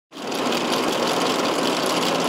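Tractor-mounted asphalt milling drum spinning and grinding away a damaged patch of road surface, over the steady hum of the tractor engine.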